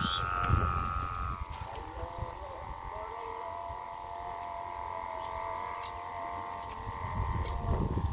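The hummer (ডাক) on a large flying chong kite droning steadily in the wind: a high steady tone with an overtone above it, dropping slightly in pitch a little over a second in. Low wind rumble on the microphone underneath.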